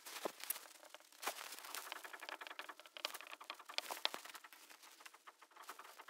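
Marker pen writing on a whiteboard: faint, irregular taps and short scratches of the pen strokes.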